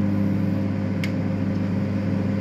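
Microwave oven running at its 500 W setting: a steady electrical hum, with a single short click about halfway through.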